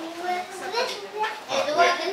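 Children's voices chattering and calling among a crowd of onlookers, several overlapping voices with no single clear speaker.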